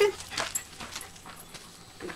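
A Bernese mountain dog being harnessed to a cart, heard as a brief faint whimper with a couple of soft clicks and rustles of handling about half a second in.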